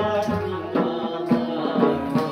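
Chitrali folk song: plucked sitar strings with a man singing, over hand strokes on a dhol barrel drum.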